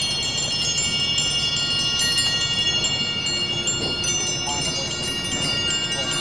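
Metallic mallet percussion and chimes from a marching band's front ensemble ringing in a quiet passage: many high bell-like notes struck at staggered moments and left to ring and overlap.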